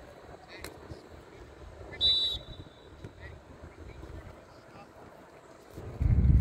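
Referee's whistle blown once, a short high blast about two seconds in, over low wind rumble on the microphone and faint distant voices from the field.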